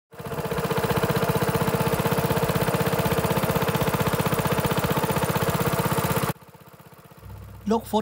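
A small boat's petrol engine running hard and steadily, with a fast, even firing pulse. It cuts off suddenly about six seconds in to a much fainter hum, and a man starts speaking near the end.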